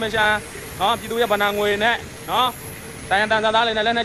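A man talking in short phrases with brief pauses, over a steady faint background hiss.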